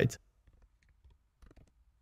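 Faint computer keyboard keystrokes: a few scattered clicks, with a small cluster about one and a half seconds in.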